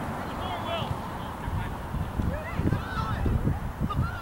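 Wind buffeting the camera microphone in uneven gusts, with many short calls in the distance.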